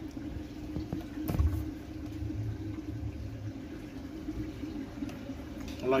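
Steady low background hum, with a single knock about a second and a half in.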